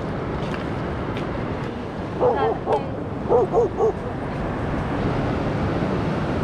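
Steady wash of ocean surf breaking on a beach, with a few short, high-pitched vocal sounds about two to four seconds in.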